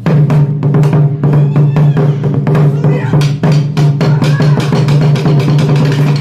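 Japanese taiko barrel drums on slanted stands struck with wooden sticks in a fast, continuous rhythm, the strokes close together over a steady deep ring from the drumheads.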